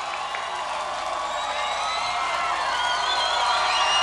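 A crowd cheering and shouting, with high whoops, during a break in the music; the cheering grows slowly louder.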